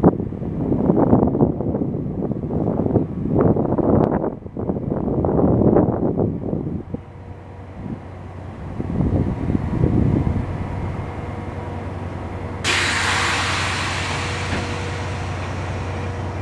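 NJ Transit commuter train standing at the platform, a steady low hum from its equipment under irregular bursts of noise in the first half. About three-quarters of the way through, a sudden loud hiss of air starts and slowly fades, typical of the train's air brakes releasing.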